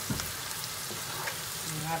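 Onions, African eggplant and ground soumbara (fermented locust beans) frying in palm oil with a steady sizzle, stirred with a wooden spoon scraping through the pan, with a few light knocks of the spoon.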